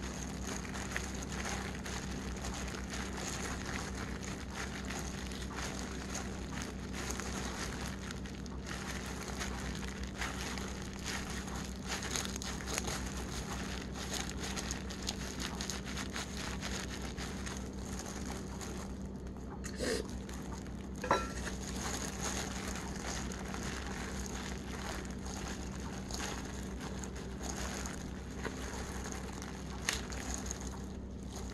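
Disposable plastic gloves crinkling as hands press and roll kimbap of rice and seaweed on a plastic cutting board, with dense fine crackling throughout over a steady low hum. A couple of sharper taps come about two-thirds of the way through.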